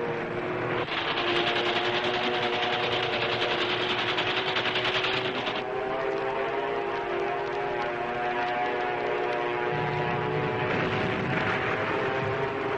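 Propeller aircraft engines droning, a steady hum of several tones that waver slightly in pitch. A harsh hiss rides over the drone for the first half and returns near the end.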